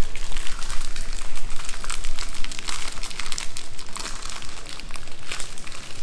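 A Heath toffee bar's wrapper crinkling and crackling in irregular bursts as gloved hands crush the candy inside it and shake the pieces out.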